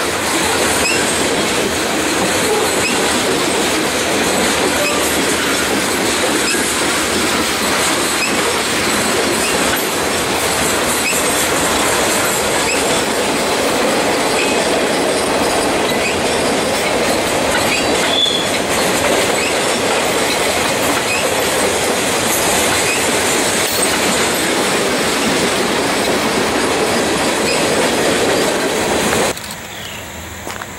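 Freight cars of a passing Norfolk Southern freight train rolling by close up: a steady loud rumble and rattle of steel wheels on rail, with occasional brief high wheel squeals. The sound cuts off suddenly near the end.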